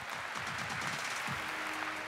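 Audience applauding, a dense even crackle of many hands clapping. Music starts up under the applause about two-thirds of the way through.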